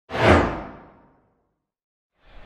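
Whoosh sound effect of a logo intro: a sudden swoosh with a low thud under it, its hiss sinking in pitch as it fades out over about a second.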